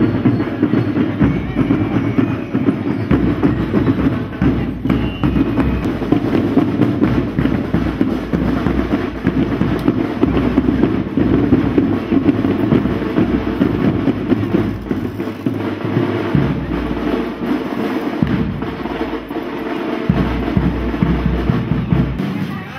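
Parade marching band playing, its drums beating a steady, unbroken rhythm.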